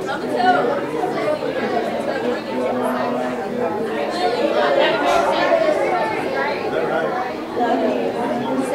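Many people chatting at once: a steady hubbub of overlapping conversations in a large hall.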